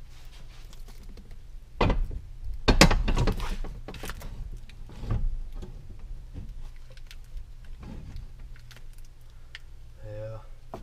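Knocks, thuds and rattles as a bucket seat is set down and shifted on its loosely bolted seat bracket and a person settles into it, the loudest thuds about two and three seconds in, with smaller knocks near five and eight seconds.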